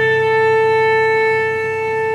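Solo cello holding one long, steady high note on its own, the accompanying cellos silent.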